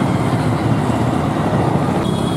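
Steady, loud low rumble of outdoor street background noise, of the kind road traffic makes, with no single event standing out.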